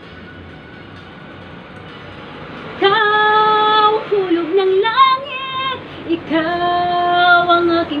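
A woman singing a Tagalog love ballad solo, holding long drawn-out notes, beginning about three seconds in after a quieter stretch.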